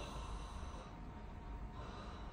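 A man's mock snore: a faint, breathy snort through the nose and throat, made on request during a flexible nasal endoscopy to show how his airway narrows in severe sleep apnea.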